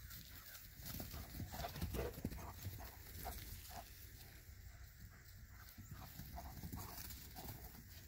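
Dogs running and playing among sheep on grass: quick, irregular footfalls and scuffles, with short animal sounds now and then.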